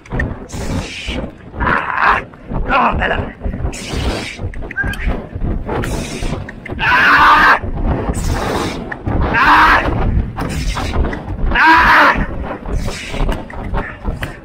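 Strong rasping breaths or grunts about once a second from horse and rider at a racing gallop, over steady wind rush and hoof thuds.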